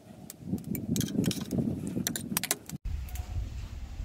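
Metal spoon and knife clinking and scraping against a plate as charred skin is peeled off grilled vegetables, in quick irregular clicks. It stops short about three seconds in, giving way to a low rumble.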